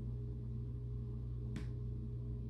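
A steady low electrical hum with a single sharp click about one and a half seconds in.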